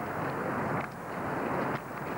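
Trackside sound of a cross-country skier skating past: skis swishing over the snow as a rushing noise that swells twice.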